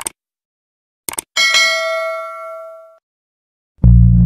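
Subscribe-button sound effects: a mouse click, then a couple of quick clicks about a second in, followed by a bright notification-bell ding that rings and fades out over about a second and a half. Just before the end a loud, deep drone of intro music starts.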